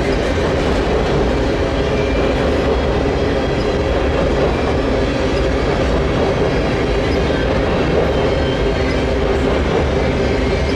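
Freight train of covered hopper cars rolling steadily across a steel girder bridge. The wheels and cars on the rail and bridge deck make a continuous, even noise.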